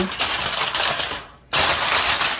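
Aluminium foil crinkling and crackling as a hand crimps it down over a baking dish, with a short break about a second and a half in before the crinkling starts again.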